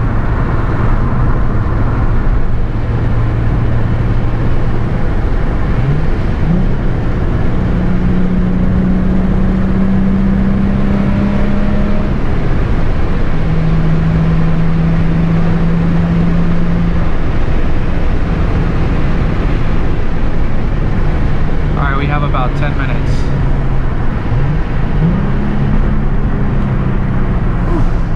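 Nissan 350Z's V6 engine and tyre and road noise heard from inside the cabin while driving. The engine's pitch holds steady, then climbs and drops several times with throttle, with a few quick rises in pitch.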